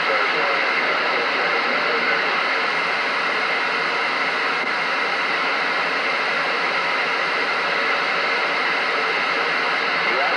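Steady static hiss from a Galaxy radio's speaker: the receiver is open on a quiet channel between transmissions.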